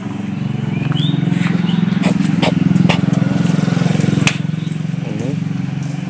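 A small engine running steadily, growing louder over the first couple of seconds and easing a little near the end, with a few sharp clicks mixed in.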